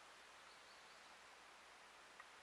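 Near silence: faint outdoor background hush.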